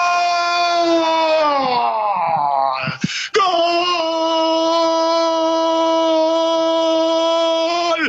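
A man's drawn-out Spanish goal cry, the long held "gooool" of a radio football commentator. One long note sags in pitch about two seconds in; after a quick breath about three seconds in, a second long, steady note follows.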